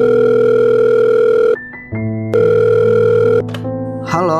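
A telephone ringing: two long steady rings, the first cutting off about a second and a half in and the second lasting about a second, over soft background music.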